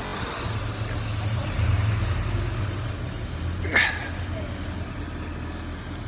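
Engine of a compact sidewalk snow-clearing tractor running as it creeps along the sidewalk. It is a steady low hum that grows a little louder for a second or so early on. A brief higher sound comes just before the midpoint.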